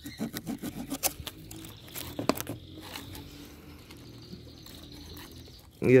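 Knife trimming the freshly cut end of a Grammatophyllum speciosum orchid pseudobulb, heard as a series of small clicks and scrapes that are busiest in the first second, with a few more about two seconds in.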